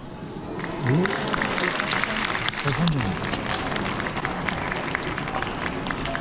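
An audience applauding, the clapping starting about half a second in and holding steady, with a couple of short voices calling out over it.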